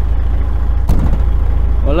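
DAF truck's diesel engine idling with a steady low rumble, and one sharp knock about a second in.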